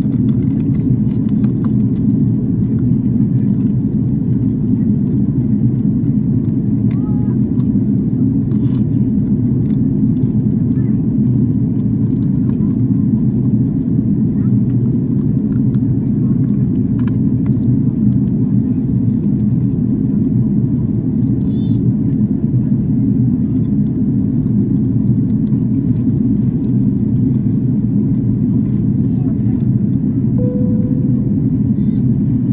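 Airbus A330 cabin noise in cruise: a steady, loud, low rush that does not change.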